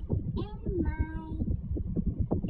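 A high woman's voice singing without clear words: a note slides up and is held for about a second in the middle, over an uneven low rumble.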